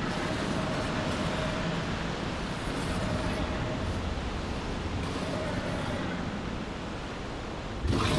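Sound-effect rushing wind of a swirling magical whirlwind, a dense steady noise that starts suddenly and holds, with a faint whistling tone running through the middle.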